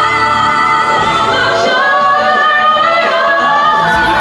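A woman belting a long held high note, captioned as an E5, in a musical theatre song, with the accompaniment underneath. The note is held from about a second in until just before the end, lifting slightly near the end.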